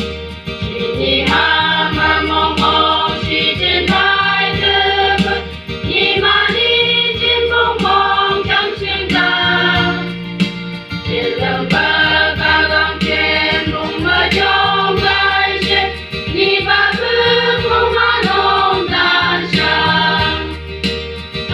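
Women's choir singing a gospel song, accompanied by an electronic keyboard holding sustained low bass notes. The singing comes in phrases, with brief breaks about every five seconds.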